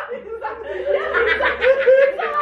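A group of young men and women laughing and chuckling together, in rapid repeated bursts, with a few words mixed in.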